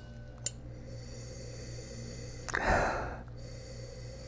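A man inhaling deeply through his nose into a wine glass to smell the wine: one breathy sniff about two and a half seconds in, lasting under a second, over a faint steady hum. There is a small click about half a second in.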